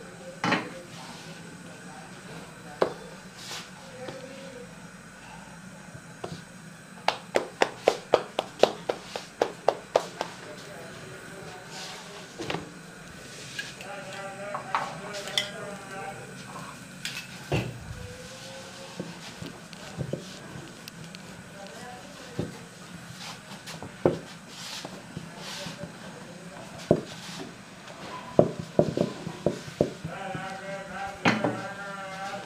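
A rolling pin knocking and tapping against the board while puran poli dough is rolled out, with a quick run of about a dozen sharp taps, roughly four a second, near the middle and scattered single knocks elsewhere, over a low steady hum.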